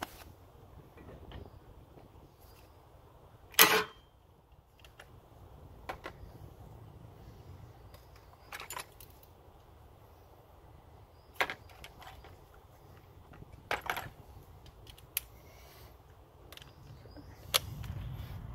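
Scattered metallic clinks and knocks of hand tools, sockets and bits being picked up and set down in a plastic tool tray, with one louder clatter about three and a half seconds in.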